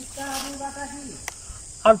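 A man's drawn-out groan of pain, held at a fairly even pitch for about a second, followed by a single short click. A faint steady high hiss runs underneath.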